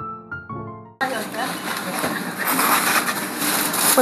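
Soft piano music that fades out, then, about a second in, an abrupt cut to supermarket checkout ambience: a dense rustling and handling noise as groceries are bagged, with faint background voices.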